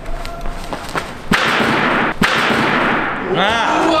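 A vault over a wooden vaulting box: light running footsteps, then two sharp bangs under a second apart as the feet strike the springboard and the hands slap the box top, each followed by a loud rushing noise. Near the end comes a cartoon-like edited sound effect with quick warbling pitch glides.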